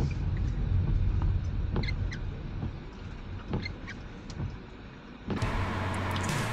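Car driving slowly over rough dirt ground, heard inside the cabin: a steady low road rumble with scattered clicks and rattles, growing quieter after about three seconds. Near the end it cuts suddenly to a steady hiss.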